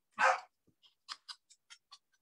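A single short dog bark, followed by a string of about eight faint, light clicks.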